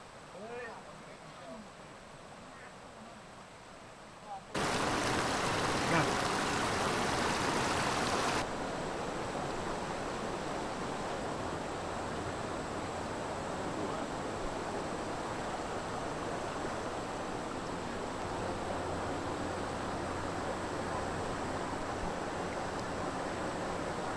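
Steady rush of a shallow river running over rocks, starting suddenly a few seconds in, loudest for about four seconds and then settling to a slightly lower even level. Faint voices before it.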